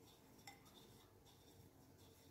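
Near silence with faint handling noise, and one soft click about half a second in, as fingers roll marmalade balls in coconut flakes inside a ceramic bowl.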